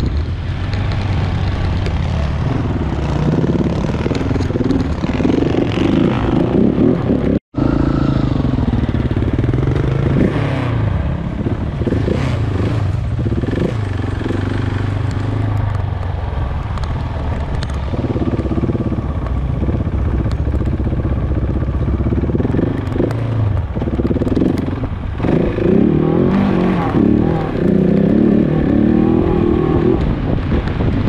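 Motorcycle engine running under way, its pitch rising and falling as the rider works the throttle. The sound cuts out for a moment about seven seconds in.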